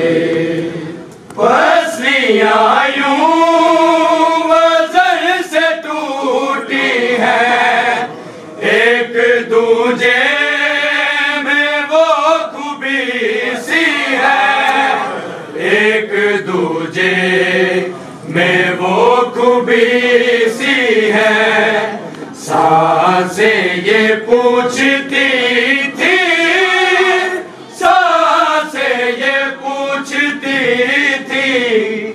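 Men chanting a noha, a Shia mourning lament, in long, wavering melodic phrases with short breaks between lines. A few sharp slaps cut through the chanting.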